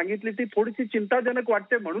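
A man speaking without a break, his voice carried over a thin, narrow-band remote line.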